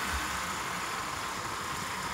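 Steady rush of wind and road noise on the microphone of a moving motorbike, with the engine running underneath.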